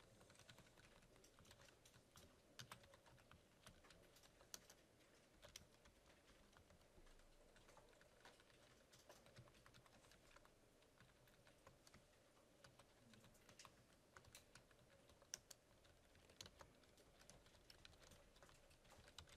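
Faint computer-keyboard typing: irregular runs of keystroke clicks, a few sharper than the rest, as lines of code are entered.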